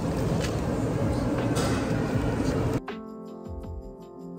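Steady background noise of a busy restaurant dining room, then about three seconds in an abrupt cut to gentle background music with clearly struck notes.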